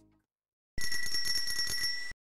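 Music fading out, then, about three-quarters of a second in, a small bell ringing rapidly and continuously for over a second before stopping abruptly. It is the traditional bell that marks the end of a story.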